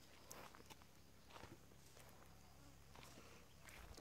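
Near silence, with a few faint, scattered footsteps on dry grass and leaves.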